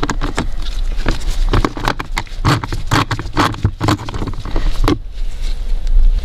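Rapid, irregular clicking and scraping of a 5.5 mm socket on a hand driver turning a small screw out of the plastic cabin filter housing cover. It stops about five seconds in.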